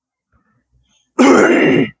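A man clears his throat once, a short loud rasp about a second in.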